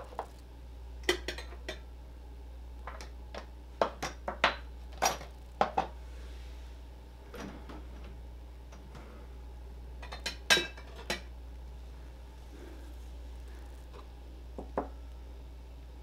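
Plastic cups and utensils being handled and set down on a tabletop: scattered light knocks and clinks in small bunches, with a short pause between them.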